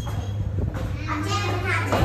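Children's voices chattering, several talking at once, louder in the second half.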